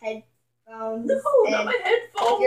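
Only speech: a child talking, with a short pause about half a second in.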